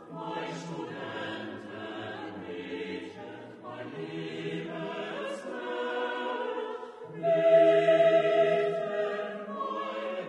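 Choral music with long held sung notes, swelling louder about seven seconds in.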